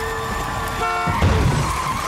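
A car horn blares briefly about a second in, then a loud heavy impact as the car hits a man, with tyres squealing after it.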